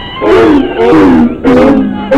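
Loud roars in three quick bursts, each sliding down in pitch.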